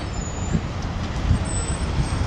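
City road traffic: a steady rumble of engines from buses, a lorry and cars on the street below.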